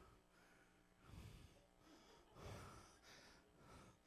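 Near silence: room tone with three faint, soft noises about a second apart.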